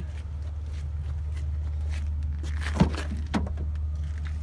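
A 2004 Nissan Maxima's front door being opened: a sharp click about three seconds in, then a lighter knock half a second later, over a steady low rumble.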